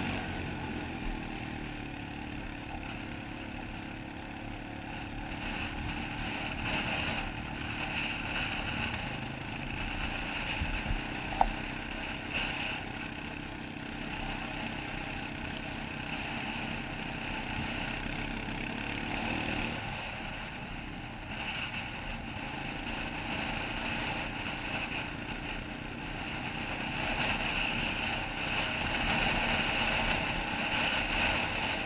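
Honda Recon ATV's single-cylinder engine running steadily as the quad travels over rough ground, with wind noise on the helmet-mounted microphone. A single sharp knock comes about eleven seconds in, and the engine note changes a little before twenty seconds in.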